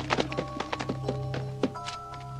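Film score music, a steady low drone with sustained higher notes coming in, over a quick run of sharp knocks and thuds; the last and loudest knock falls a little after one and a half seconds in.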